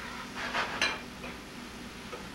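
A utensil scraping and clinking against a metal skillet as shrimp are stirred, with two or three brief strokes about half a second to a second in.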